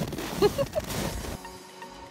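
Rustling and wind noise on the microphone with a brief voice sound, then about a second and a half in an abrupt cut to soft background music with mallet-percussion tones.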